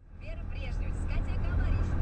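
Steady low road and engine rumble of a car driving at motorway speed, heard from inside the cabin, rising in from silence at the start, with a person's voice talking over it.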